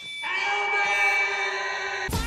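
A man's long, loud yell held on one steady pitch, starting about a quarter-second in and cut off abruptly at the end.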